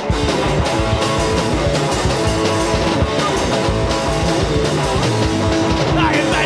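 Hardcore punk band playing live: distorted electric guitar, bass and fast drums crash in together all at once and keep going at full tilt, with no vocals yet.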